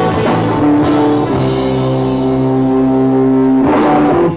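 Live rock band playing electric guitar and drum kit. About a second in, the band holds one chord that rings steadily, and the drums come back in near the end.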